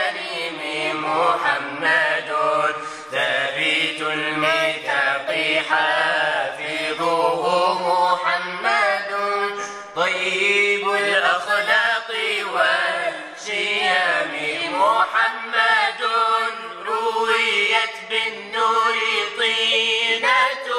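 Arabic nasheed: voices chanting a drawn-out, wavering melody.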